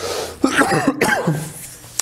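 A man coughing, with throat clearing; he is feeling unwell.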